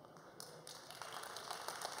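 Faint applause from a congregation, beginning about half a second in and slowly building.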